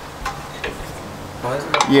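A few faint metal clinks and taps from the front suspension parts (lower control arm and steering knuckle) of a Toyota Prado 150 being handled by hand, over a low steady hum.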